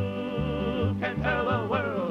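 Three-part male folk vocal harmony holding a long chord, then breaking into moving sung lines about a second in, over a steady bass line.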